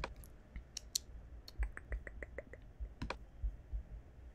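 Computer mouse and keyboard clicks: scattered single clicks, with a quick run of about seven taps in the middle.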